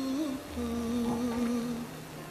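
Background music score: a wordless humming voice holding two long notes, the second lower, over steady keyboard chords.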